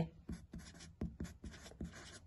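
Felt-tip marker writing on lined notebook paper: a series of short, faint, irregular scratching strokes.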